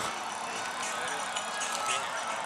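Steady outdoor background noise, an even hiss with no distinct event, typical of urban ambience with distant traffic.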